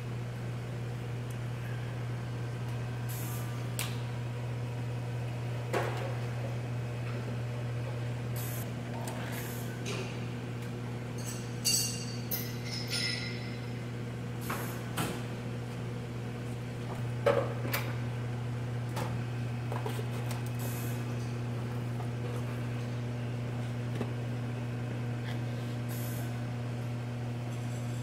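Steady low electrical machine hum, even in level, with a scattering of light clicks and knocks, the sharpest about seventeen seconds in.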